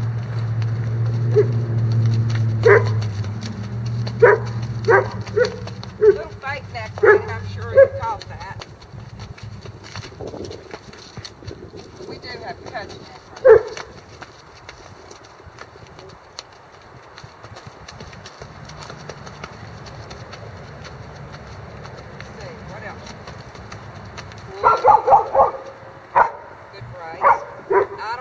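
A dog barking in short single barks, several over the first eight seconds, one loud bark about halfway, and a quick run of barks near the end. A low steady hum lies under the first part.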